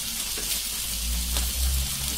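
Marinated paneer cubes with capsicum and onion sizzling in oil in a nonstick pan while being stirred with a spatula, with a few light ticks of the spatula against the pan. The paneer is browning, the frying stage of paneer tikka.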